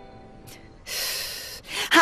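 A woman's short, loud huffing breath out, lasting under a second, as the background music fades; her annoyed speech begins near the end.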